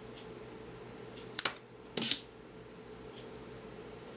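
Scissors snipping double-sided tape off its roll: two short sharp snips about half a second apart, the second slightly longer, over a faint steady hum.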